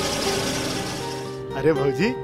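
A car driving off, its engine and road noise slowly fading under background music, then cutting off suddenly about a second and a half in; a man then exclaims "arey" over the music.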